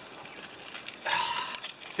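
Faint background hiss, then about halfway through a man's voice holds a short, flat-pitched 'uhh' or hum that fades out, with a small click just after.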